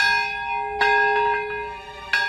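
A memorial bell tolling for the minute of silence: struck at the start and again a little under a second later, each strike ringing on with many overtones and slowly fading.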